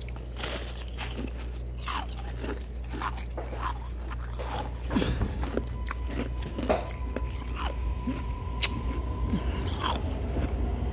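Crunchy hospital (nugget) ice being bitten and chewed close to the microphone: irregular crunches, louder and closer together from about halfway through.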